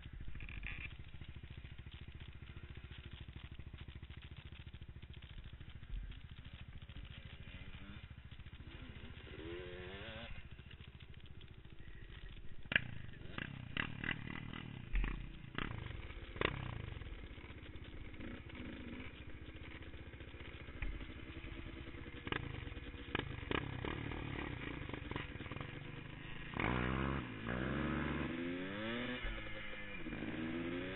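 Quad bike (ATV) engine running on a dirt trail ride, revving up about ten seconds in and again near the end. In the middle comes a run of sharp knocks and rattles.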